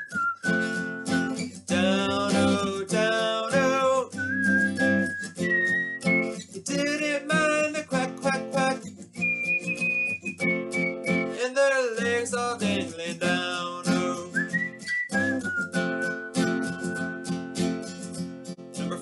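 Acoustic guitar strummed steadily under a man singing a folk-song melody, with several long, high held notes.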